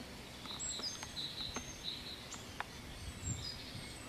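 Outdoor ambience of small birds chirping repeatedly, with a few short, thin high whistles, over a steady background hiss. A low rumble rises briefly about three seconds in.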